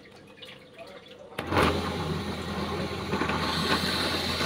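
A bench drill press switched on about a second and a half in, its motor running with a steady hum as the bit bores a bolt hole into waru hardwood.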